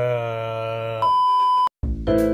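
A man's drawn-out groan on one low held pitch, cut off about a second in by a steady high censor bleep tone lasting under a second. After a brief silence, piano music starts near the end.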